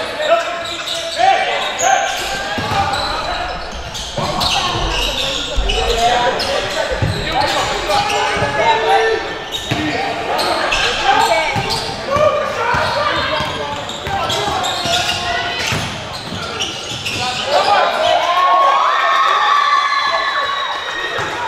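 Basketball game in a gym: a ball bouncing on the court with repeated short thuds, amid indistinct shouts and chatter from players and onlookers, echoing in a large hall.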